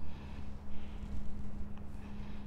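A person breathing close to the microphone, two soft breaths over a steady low electrical hum, with a faint click near the end.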